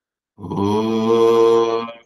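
A man's voice chanting one held syllable of a mantra on a steady low note. It starts about half a second in and lasts about a second and a half.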